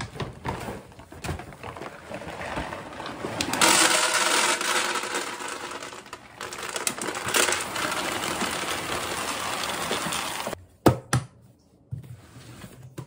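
Dry cat kibble poured from a large bag into a plastic storage container: a steady rattling pour, heaviest about four seconds in. Near the end the container's lid snaps shut with two sharp clicks.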